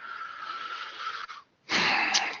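A man breathing close to a headset-type microphone: a soft in-breath with a faint whistling tone, then a louder breath out about one and a half seconds in.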